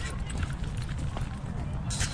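Low rumble of wind and movement noise on a camera strapped to a trotting Staffordshire bull terrier, with a few faint light clicks from its gait and harness.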